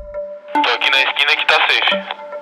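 Background music notes, then from about half a second in a voice coming through a handheld walkie-talkie, thin and narrow-sounding.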